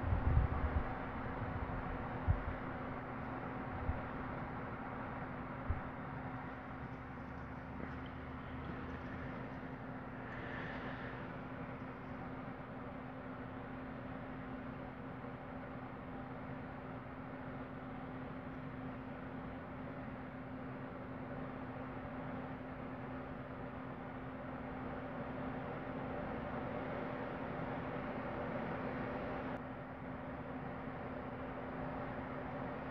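A steady low hum with background hiss, with a few short low thumps in the first six seconds.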